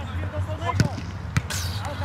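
Football being kicked on an artificial-turf pitch: two sharp thuds of the ball, about half a second apart, in the second half.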